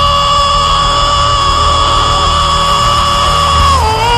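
A gospel singer holding one long, high belted note over the band's low accompaniment, the pitch dropping near the end.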